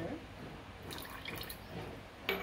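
Liquid flavouring dripping from a small glass bottle into a bowl of egg-and-milk mixture: a short run of quick drips and light ticks about a second in.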